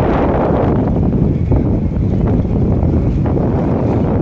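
Wind buffeting the microphone over the steady low running of an RNLI lifeboat and its tracked launch-and-recovery tractor on the slipway.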